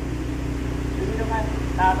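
A steady low machine hum, like an engine running, with a brief voice over it about a second in and again near the end.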